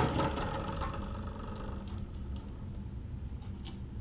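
A faint steady hum of room noise, a little louder in the first half-second.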